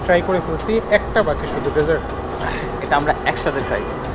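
Men's voices talking at a table, over a steady low rumble of street traffic.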